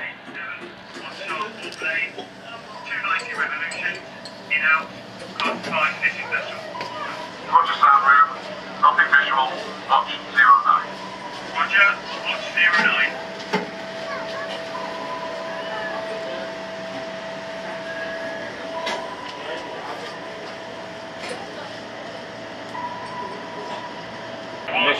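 Indistinct voices talking in short phrases over a steady background hum with faint held tones. About halfway through the voices stop, leaving the hum and tones with a few sharp clicks.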